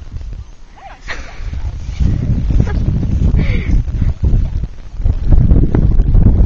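Wind buffeting the microphone outdoors, an uneven low rumble that builds about a second in and grows loudest near the end, with brief faint voices.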